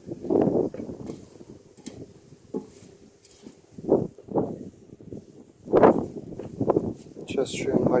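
Freshly shredded dry moss rustling as a hand scoops it up and lets it fall back into an enamel pot, in several short bursts.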